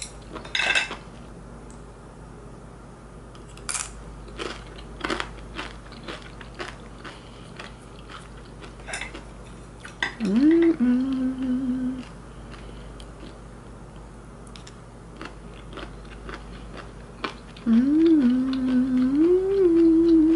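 Wooden chopsticks clicking and scraping against ceramic dishes as she eats, with a woman's closed-mouth hum of enjoyment twice, the longer one near the end.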